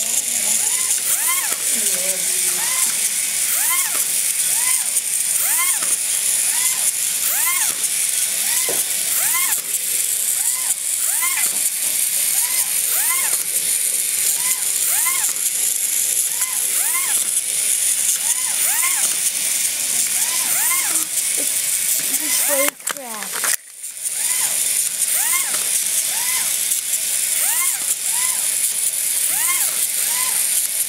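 Small battery-powered toy running on the floor: a steady high whir with a short rising-and-falling squeak repeating about three times every two seconds, briefly cutting out about twenty-three seconds in.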